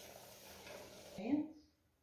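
Faint room noise, then a brief voice sound about a second and a quarter in, followed by dead silence where the recording is cut.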